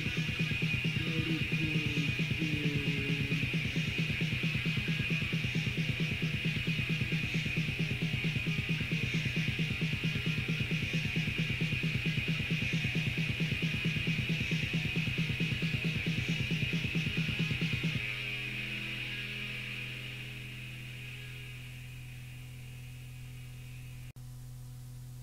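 Raw black metal from a 1992 cassette demo: distorted guitar over fast, even drumming. The band stops about 18 seconds in, leaving a steady low hum and hiss that slowly fade as the song ends.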